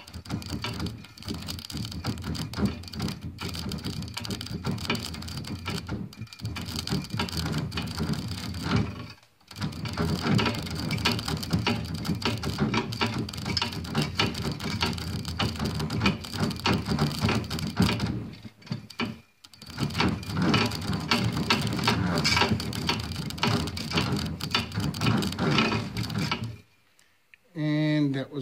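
Electric arc crackling and sizzling between two thin copper wires shorted across the rectified DC output of a washing machine's brushless motor turned as a generator; a fairly steady, continuous arc, as DC gives. It breaks off briefly twice, about 9 and 19 seconds in, and stops shortly before the end.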